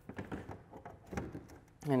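A power-supply plug being pushed into a power strip: a few light clicks and knocks from the plug and cord being handled.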